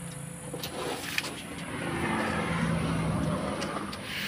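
A motor vehicle's engine running, growing louder about two seconds in and easing off, with a few light clicks.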